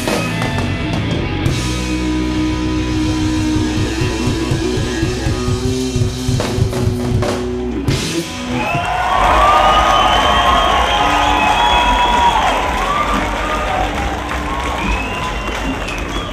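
Live rock band (drum kit, electric guitars and bass) playing the last bars of a song, which stops abruptly about eight seconds in; a large outdoor crowd then cheers and whistles, louder than the band had been.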